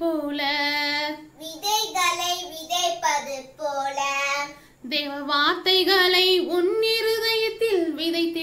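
A young girl singing solo, holding long notes in phrases with short breaks between them.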